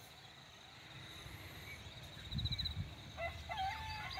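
Faint rural ambience: a steady high insect trill with a few bird chirps and a little low rumble, then near the end a distant rooster beginning a long crow.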